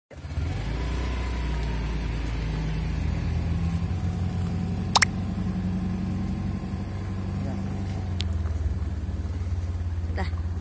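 A car engine running steadily with a low hum. One brief sharp sound comes about halfway through.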